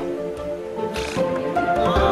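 Orchestral film score playing sustained chords. Near the end a wavering high tone joins the music.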